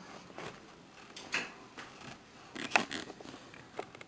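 Quiet, scattered rustles and light knocks of movement and handling: a child shifting about and settling into a fabric armchair with a phone, the loudest knock a little before three seconds in.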